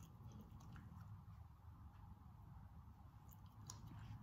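Cocker spaniel puppy chewing a small treat: faint, scattered crunching clicks over a low steady room hum.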